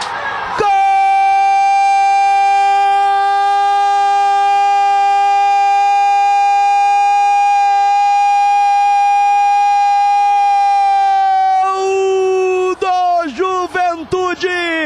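A Brazilian radio football commentator's goal cry: one shouted "gol" held on a single steady pitch for about eleven seconds. It drops slightly as it ends, and then rapid Portuguese commentary picks up again near the end.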